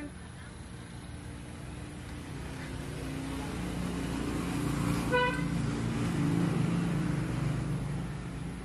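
A motor vehicle passing: its low engine rumble grows louder through the middle and eases near the end, with one short horn toot about five seconds in.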